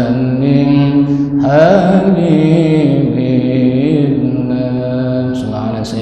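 A man's voice chanting Arabic text in long held notes, with melodic turns rising and falling, heard through a microphone.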